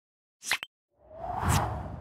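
Logo-intro sound effects: a short swish with a sharp click about half a second in, then a longer whoosh that swells with a low rumble, peaks in the middle and fades away.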